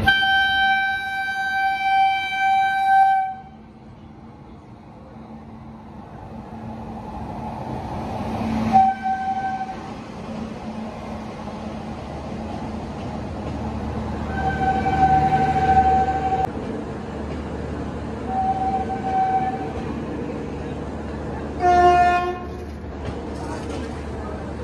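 Electric locomotive horn sounding one long blast of about three seconds as the train runs in, then several shorter blasts of the same pitch, over the steady rumble of coaches rolling past as the train slows at the platform. Near the end a brief lower-pitched horn sounds once.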